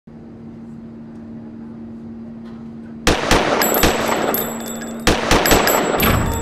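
A steady low hum, then about halfway through a rapid volley of about four gunshots, a short pause, and a second volley of about three shots near the end, with a high ringing between them.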